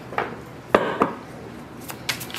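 A deck of tarot cards being handled in the hand, giving a few sharp card clicks, the loudest about three quarters of a second in.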